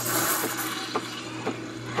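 Espresso machine steam wand hissing as it froths oat milk in a stainless steel pitcher, the hiss loudest at first and easing off after about a second, over the machine's steady low hum.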